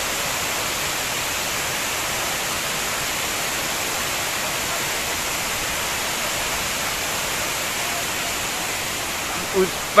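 Steady rush of water pouring over a dam's concrete overflow weir and down the spillway, an even hiss-like roar that does not change.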